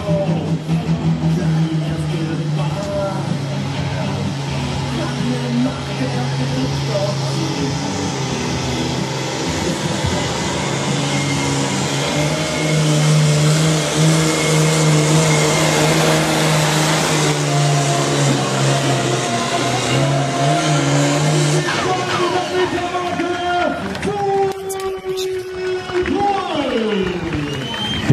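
Diesel engine of an International 3088 pulling tractor running hard under load, a steady drone as it drags the weight-transfer sled down the track. Near the end its pitch falls away.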